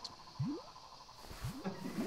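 A few faint, short rising vocal sounds from a performer, like questioning hums. Audience laughter begins right at the end.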